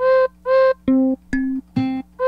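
The note C3 struck repeatedly on a MIDI keyboard playing Ableton Sampler with round robin on, each hit sounding a different recorded instrument sample in turn. Five short notes about half a second apart, differing in tone, the first two an octave higher than the rest.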